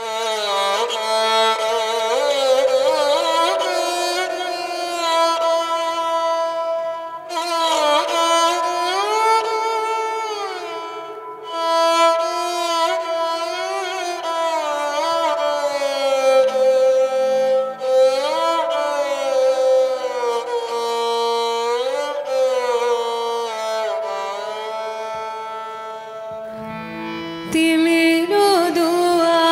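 Instrumental music: a melodic line that glides between notes over a steady low drone, beginning abruptly at the start.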